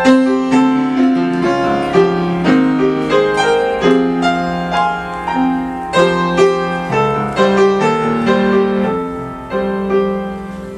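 Solo grand piano improvising: a continuous run of struck chords and melody notes that ring on under the pedal, riffing on a three-note chord picked by a volunteer.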